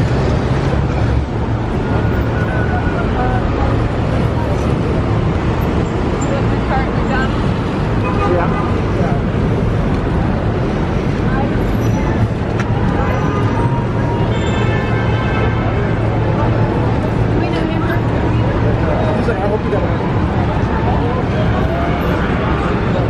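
Busy city street ambience: steady traffic noise from passing cars and taxis, with the chatter of many passersby.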